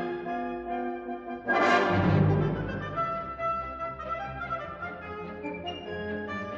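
Orchestral music with brass playing held notes. A sudden loud swell of the whole orchestra comes about a second and a half in, then dies back to the sustained chords.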